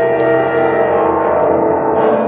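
Live jazz band holding a sustained, ringing chord.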